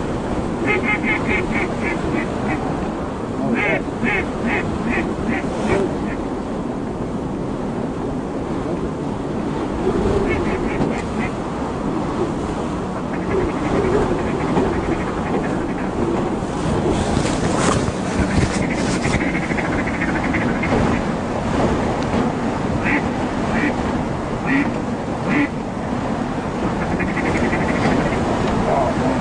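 Ducks quacking in several quick runs of rapid, evenly spaced quacks, over a steady bed of wind and water noise. A brief burst of noise comes just past the middle.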